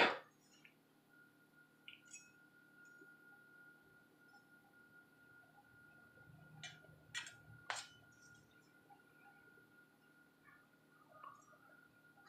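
A short puff of breath blown across a makeup brush right at the start to knock off loose mineral powder. After that it is quiet: a faint steady high tone and a few light clicks about seven seconds in, while the powder is brushed on.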